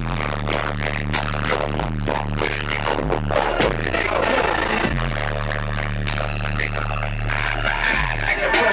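Music played loud through a car audio system, with long held bass notes over a beat. The bass slides down in pitch between about three and five seconds in.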